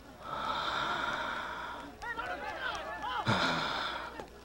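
A person's voice making non-speech sounds: a long breathy hiss like a drawn breath, then a run of short, high, squeaky rising-and-falling vocal sounds. Speech begins near the end.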